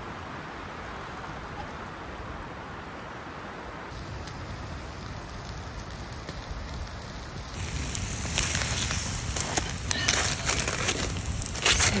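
Campfire burning in the wind: a steady rushing hiss, then from about eight seconds in a louder run of crackling, crinkling clicks.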